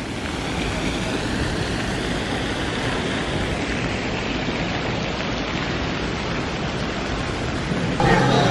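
Steady rush of water falling down the glass walls of a cascade fountain, an even, unbroken noise.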